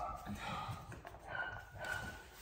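Standard schnauzer puppy whining in short, high-pitched whines, the clearest one near the end.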